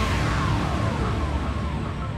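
Wirtgen surface miner running, a steady deep engine rumble, mixed with background music that carries a few falling glides.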